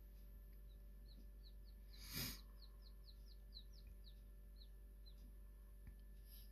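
Newly hatched quail chicks peeping in an incubator: a run of quick, faint, high peeps, about three or four a second, with a brief breathy rush of noise about two seconds in.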